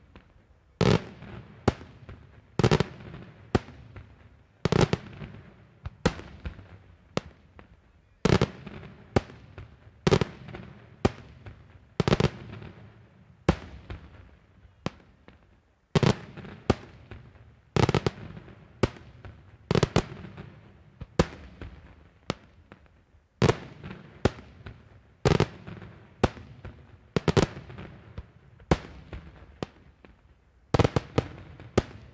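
Daytime aerial firework shells bursting in a steady series, about one loud bang a second, each trailing off in echo and crackle, with a short pause about halfway through.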